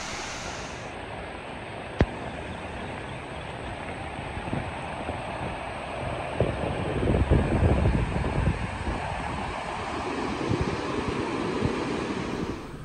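Floodwater rushing: lake water spilling over a dam and running through flooded ground, a steady wash of noise that swells about halfway through. One sharp click about two seconds in.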